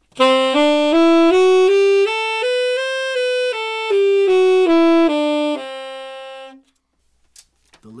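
Tenor saxophone playing a one-octave concert C Lydian scale (C, D, E, F-sharp, G, A, B, C) up and back down, one separate note at a time, with the raised fourth giving its bright sound. It ends on the low C, held about a second.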